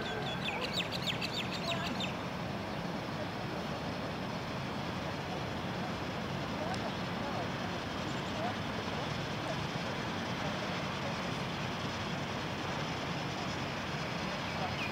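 NZR Ja class 4-8-2 steam locomotive Ja 1275 and its carriages rolling slowly into the station, a steady low rumble and hiss. A rapid high chattering runs through the first two seconds.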